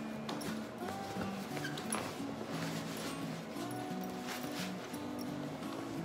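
Background music with a slow melody of held notes. Under it come light, scattered rustles and knocks as folded clothes are pressed into a fabric packing cube.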